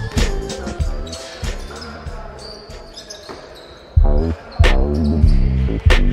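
Backing music fades out, leaving a basketball bouncing on a hardwood gym floor with a few sharp knocks. Loud bass-heavy music comes back in about four seconds in.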